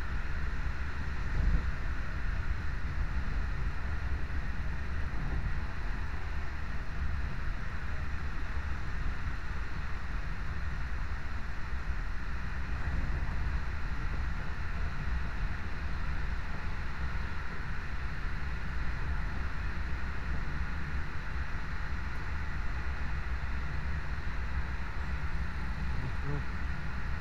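Passenger train running along the track at speed: a steady rumble of wheels on rails that stays even throughout.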